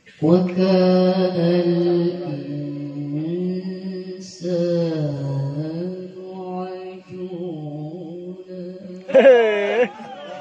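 A woman's voice reciting the Quran in melodic tilawah style, drawing out long held notes that slide and waver between pitches. Near the end comes a louder, more heavily ornamented passage.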